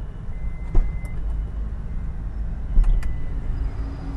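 Toyota Alphard's 3.5 L V6 idling, a low steady rumble heard from inside the cabin, with a few short sharp clicks about a second in and again near three seconds.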